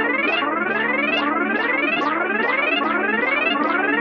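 Synthesizer passage in a Hindi DJ remix: runs of rising notes repeating about two a second over a held low tone, with no drum beat.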